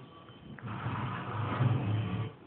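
Dog growling: a low, rough rumble that starts about half a second in and carries on for over a second.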